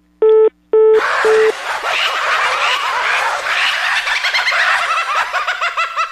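Telephone busy-signal beeps, short evenly spaced tones about a quarter second apart, as the line goes dead after the prank call is hung up. About a second in they give way to a dense, loud chatter of many short rising-and-falling chirps, a comic sound effect.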